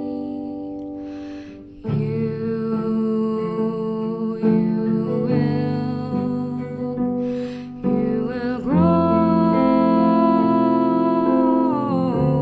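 Small band playing an instrumental passage: two saxophones over electric guitar and keyboard. Notes enter again after a short dip about two seconds in, and a long chord is held from about nine seconds to the end.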